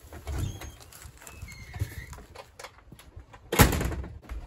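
Footsteps on interlocking plastic patio tiles, soft irregular thumps. Near the end comes one louder rushing, scuffing burst lasting about a third of a second.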